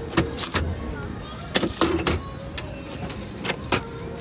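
Bubble tea cup sealing machine running a sealing cycle: sharp mechanical clacks and knocks in three clusters as the tray is slid in and the press comes down to seal the plastic film over the cup.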